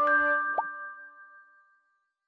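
Closing jingle of a radio station's logo animation: a few bright chime-like notes end on a held chord that rings out and fades away, with a short rising blip about half a second in.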